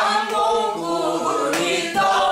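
Singing in the Korean traditional folk style (namdo minyo / pansori vocal), with long held notes that waver and bend in pitch.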